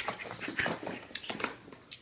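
A Llewellin setter's booted paws scrabbling on a hardwood floor: a quick, irregular run of taps and scuffs.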